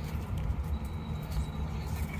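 Double-decker coach heard from inside the cabin while moving slowly: a steady low engine and road rumble. A faint thin high tone sounds for about a second in the middle.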